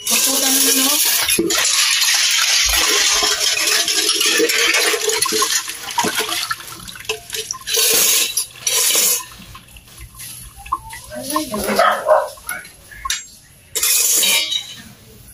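Water running and splashing into a stainless steel bowl as dishes are washed by hand. It flows steadily for the first six seconds, stops, then comes in two short gushes about two seconds later.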